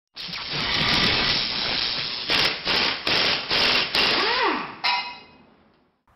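Sound effects of an animated logo intro: a long noisy whoosh, then a quick run of about five swishes with a short pitch swoop, ending in a sharp hit that rings and fades away.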